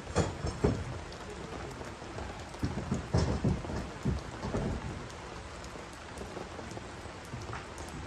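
Steady rain falling, with a run of irregular heavier thumps in the first half.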